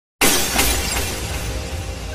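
Glass-shattering sound effect: a sudden loud crash just after the start, a second smaller crash about half a second later, then shards tinkling and fading, with music underneath.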